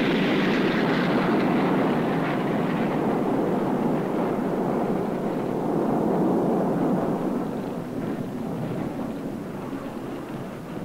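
Napalm bursting into fire over a target: a loud, dense rushing noise of the flames that holds steady, then slowly fades over the last few seconds.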